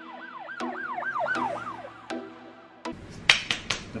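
An edited-in siren-like sound effect or music sting: a whooping tone rising and falling about three times a second over steady held notes, cutting off abruptly about three seconds in. A few sharp clicks follow near the end.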